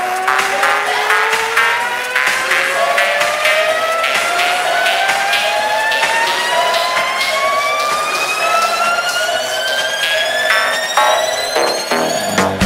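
Electronic dance music build-up in a DJ remix mix: a long synth sweep rises steadily in pitch over a fast, even percussion pattern with the bass cut out.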